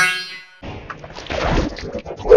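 Effects-processed logo audio: a ringing note fades out in the first half second. Then, a little over half a second in, a duller, cluttered jumble of distorted sound starts.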